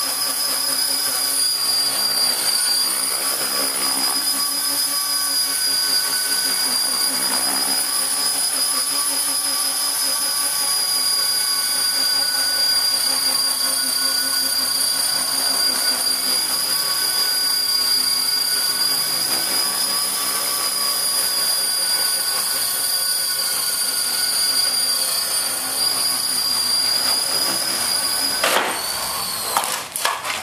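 Electric Titan T-Rex 450 RC helicopter hovering, its motor, main gear and rotor giving a steady high-pitched whine. Near the end the pitch falls and a couple of sharp knocks follow as it crashes onto concrete, then the sound drops away abruptly.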